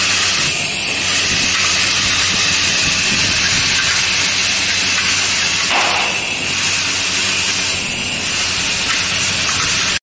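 Vibratory bowl feeder of a screw-and-washer assembly machine running: a steady hiss with a low, even hum, as the screws and washers rattle along its tracks.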